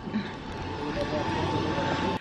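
Small electric flatbed utility cart driving slowly along a street, its motor giving a steady high whine over street noise.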